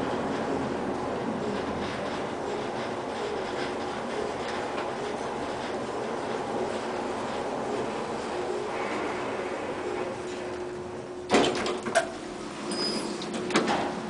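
Otis traction elevator car travelling up with a steady rushing hum and a faint steady tone. Near the end it arrives: two sharp clunks about half a second apart, a brief high beep, then the doors sliding open.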